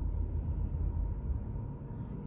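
Steady low rumble inside a car cabin.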